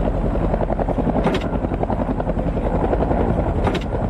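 Helicopter running at close range, its rotor giving a steady, fast beat over the turbine.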